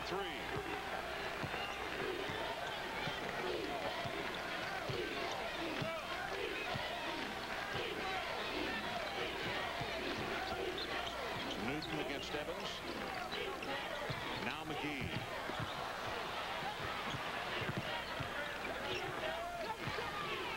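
Basketball being dribbled on a hardwood court under the steady noise of a large arena crowd, many voices talking and shouting at once.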